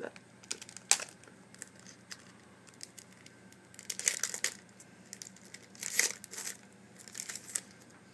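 Foil wrapper of a Yu-Gi-Oh! Hidden Arsenal booster pack crinkling and tearing in a series of short rustles and snaps, loudest about one second in and again about six seconds in.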